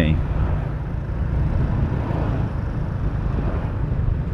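Motorcycle engine running at a steady cruise, heard from the rider's seat, with an even rush of road and wind noise over a low, unchanging engine note.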